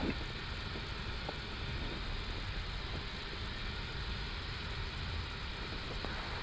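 Steady flight-deck background noise of an Airbus A330-200 rolling slowly onto the runway with its engines at idle: a low rumble under a faint, even hiss.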